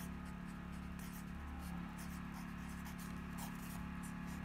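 Pen writing on lined notebook paper: faint short scratching strokes as an equation is written out by hand, over a steady low hum.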